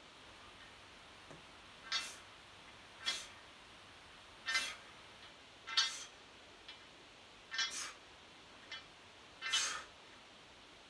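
A man breathing out hard in short puffs, one with each rep of a lying bar press, about every one and a half seconds, six times.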